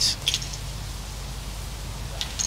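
Steady open-air background hiss from an outdoor microphone, with no distinct event in it.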